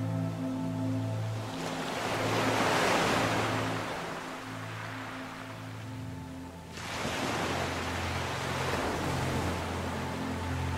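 Soft ambient music of sustained low notes over recorded ocean waves washing in and out. One wave swells about two seconds in and fades, and another comes in sharply near seven seconds.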